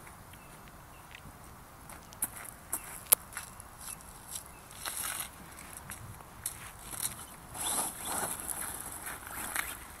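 Faint, scattered clicks and short rustling bursts, with a longer, louder stretch of rustling late on as the small electric RC buggy drives back over gravel and grass.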